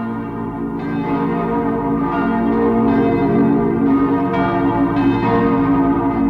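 Church bells pealing, several bells struck one after another and left to ring, swelling in loudness over the first seconds.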